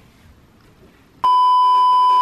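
Television colour-bars test-tone beep, used as an edit transition: one steady, loud pitched tone that starts suddenly about a second in and holds level for about a second, after a short stretch of quiet room tone.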